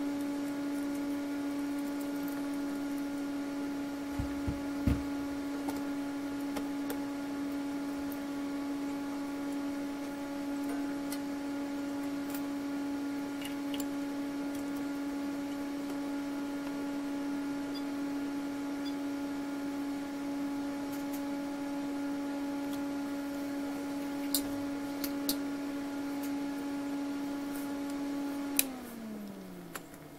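Steady hum of a Hewlett-Packard spectrum analyzer's cooling fan, with a few light clicks and knocks. Near the end a click as the analyzer is switched off, and the hum falls in pitch and fades as the fan spins down.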